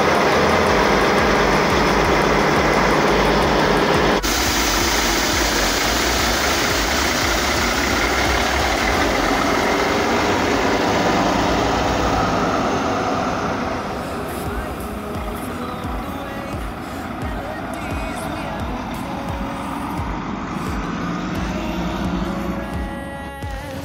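Diesel engine of a Prevost coach bus idling close by, a steady loud rumble with a fan-like hiss over it. The level drops about two-thirds through as the bus moves off down the lot.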